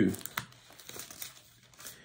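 Thin Bible pages being turned: a faint paper rustle with a small click about half a second in.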